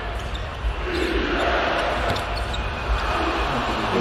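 A basketball being dribbled on a hardwood arena court, over a steady wash of arena crowd noise.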